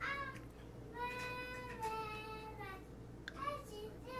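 High, drawn-out wailing cries: a short one at the start, a long, slowly falling one of nearly two seconds beginning about a second in, and a brief one near the end.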